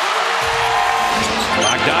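Arena crowd noise with a few short held notes of music over the public address, and a basketball being dribbled on the hardwood court.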